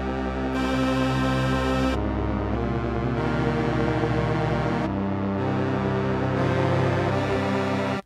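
A string sample played from Ableton Live's Sampler via MIDI: sustained string notes at several different pitches, shifting every second or two, cutting off suddenly at the end.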